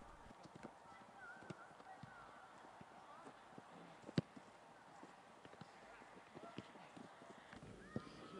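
Faint sound from a soccer practice field: scattered soft thumps and knocks, one sharper knock about four seconds in, with faint distant voices.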